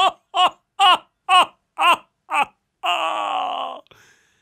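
Theatrical laughter from a man's voice: a run of 'ha' bursts about two a second, each falling in pitch, ending in one long drawn-out held note near the end.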